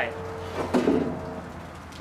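A person's voice making a short wordless sound about half a second in, over a steady low hum.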